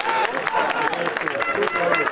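Scattered hand-clapping and shouting voices from a small crowd at an amateur football ground, celebrating a goal just scored.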